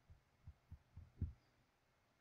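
Near silence with four faint, low knocks about a quarter second apart, the last the loudest: a marker pressing on paper against a desk as a formula is written.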